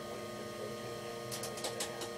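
A steady electrical hum made of several fixed tones, with a quick run of faint clicks about two-thirds of the way through.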